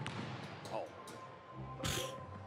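Game sound of a basketball in an indoor gym: a sharp bounce of the ball on the hardwood court at the start, and near the end a heavier thump with a brief noisy burst as the shot goes up at the backboard. Faint background music runs underneath.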